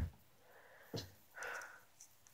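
Mostly quiet, with a faint click about a second in and a brief soft breath-like noise, like a sniff, about half a second later.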